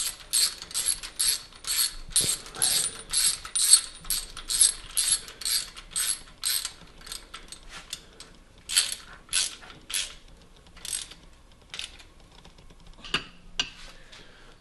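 Hand ratchet wrench clicking as bolts at the engine's cam gear are turned, a quick even run of clicks for about seven seconds, then slower, scattered clicks with pauses.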